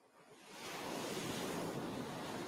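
A single ocean wave washing on a beach, a rushing surf sound that swells up over about a second and then begins to ebb.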